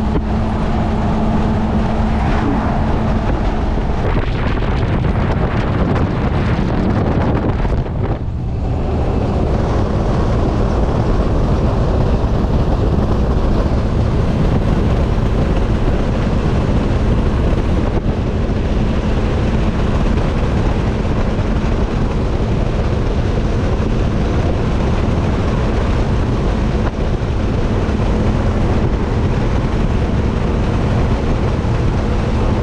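Engine and road noise inside the cab of an older vehicle cruising on the highway, with wind rushing on the microphone. A steady low engine hum runs under it, and the noise briefly drops about eight seconds in.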